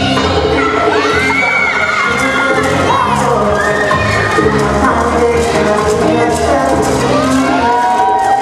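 Bachata music played over loudspeakers, with an audience cheering and shouting over it throughout.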